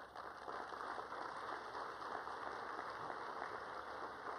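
Audience applauding steadily: a dense clatter of many hands clapping at once.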